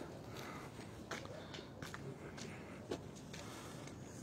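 Faint footsteps on a paved path, a soft step about every half second.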